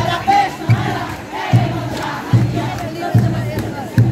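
Ciranda music with a crowd singing along. A bass drum strikes a slow, even beat about five times in four seconds, with many voices singing the melody over it.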